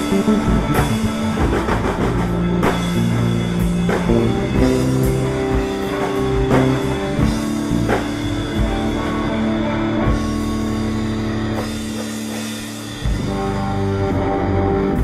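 A band playing rock: drum kit with cymbals, electric bass holding long low notes, and electric guitar. A little before the end the drums and low end thin out briefly, then the full band comes back in.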